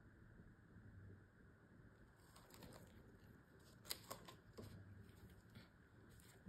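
Near silence: room tone with a few faint light clicks and taps, the clearest about four seconds in.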